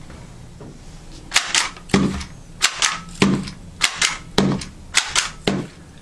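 Meto 2600-series handheld labeling gun being squeezed and released over and over to print labels: a quick series of sharp plastic clicks, often in close pairs, starting about a second and a half in.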